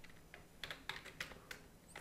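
Computer keyboard being typed on, about five faint keystrokes a few tenths of a second apart.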